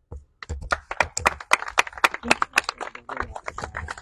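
Brief applause from a small audience: separate hand claps in an irregular patter, starting about half a second in and fading near the end.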